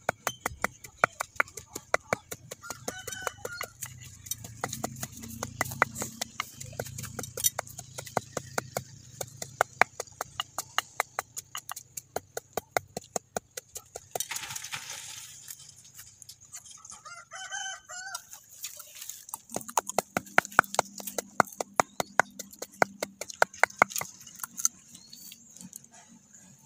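Wooden pestle pounding turmeric slices in a small mortar: steady rhythmic knocks, about three to four a second, pausing briefly twice. A few short bird calls sound in the background.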